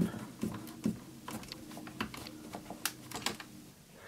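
Small screwdriver tightening the screw of a terminal block on a power distribution board to clamp a wire: a run of light, irregular clicks and ticks.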